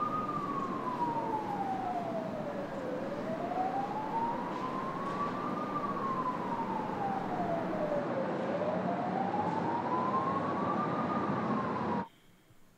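Emergency vehicle siren in a slow wail, its pitch rising and falling on a cycle of about five and a half seconds and peaking three times, over a steady rushing background noise.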